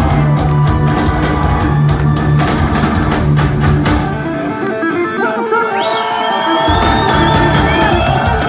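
A heavy metal band playing live, with drum kit and distorted electric guitars. About four and a half seconds in, the bass and drums drop out for about two seconds under a held high note that bends upward, then the full band comes back in.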